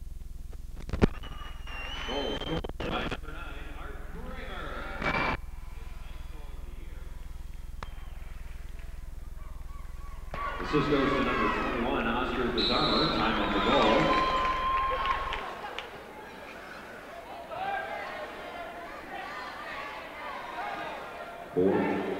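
Indistinct voices over a steady low hum, sparse at first, then louder and denser from about ten seconds in; the hum stops about fifteen seconds in.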